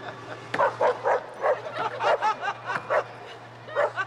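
Spaniel yipping and barking in a quick series of short, high yelps, starting about half a second in.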